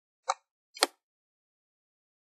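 Two sharp computer mouse clicks about half a second apart, one about a quarter of a second in and one near the middle, as a label element is dragged and resized in the App Lab editor.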